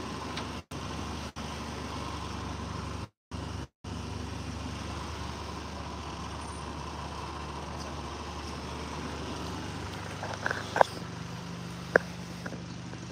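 Steady background hum and hiss, cut by several brief total dropouts in the audio during the first four seconds, with a few short knocks near the end.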